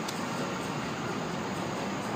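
Steady background noise of a city street at night, an even low rumble of traffic with no distinct events.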